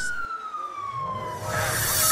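Emergency vehicle siren wailing, its pitch falling steadily through the first second and a half. Near the end a rising whoosh comes in.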